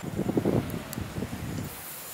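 Wind rumbling on the microphone. Near the end a steady high hiss starts as a salmon fillet goes onto the hot grate of a charcoal grill and begins to sizzle.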